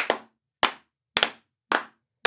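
Slow, even hand claps: four sharp claps a little over half a second apart.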